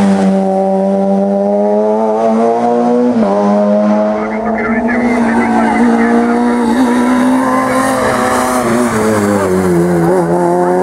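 Peugeot 106 rally car's four-cylinder engine running hard at high revs, its pitch edging up in each gear. There is an upshift about three seconds in and another near the end.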